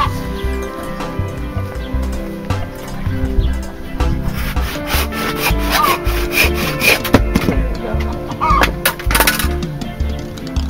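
Hand saw cutting through a small log of firewood, a run of back-and-forth strokes in the second half, over background music.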